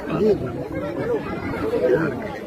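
Several people talking at once in a packed crowd: indistinct, overlapping chatter.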